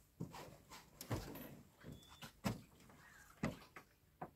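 Faint, irregular knocks and taps, about ten of them spread over a few seconds, as an angler swings and casts a long bamboo fishing pole from an aluminium boat.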